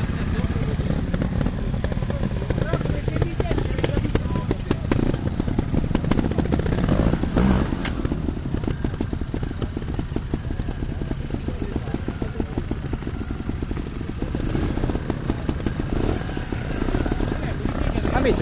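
Trials motorcycle engine running steadily, a fast even firing beat over a low rumble.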